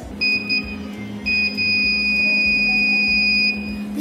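Electronic buzzer of a homemade IR-sensor safety-box alarm giving a steady high beep: one short beep of about half a second, then a longer one of about two seconds as the sensor is triggered. Soft background music runs underneath.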